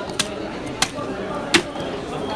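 Three sharp chops of a large knife through a big rohu fish into a wooden chopping block, taking off the head; the last chop is the loudest. Voices talk in the background.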